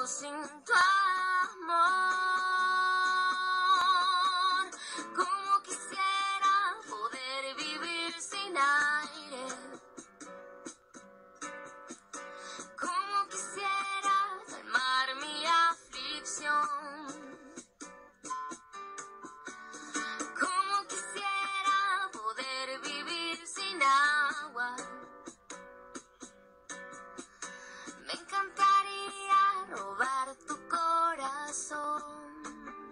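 Young woman singing a slow Spanish-language love song, accompanied by acoustic guitar in a relaxed bossa nova style. Her voice holds a long note with vibrato a couple of seconds in.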